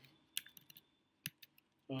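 Computer keyboard being typed on: a handful of faint, separate key clicks in the first second and a half.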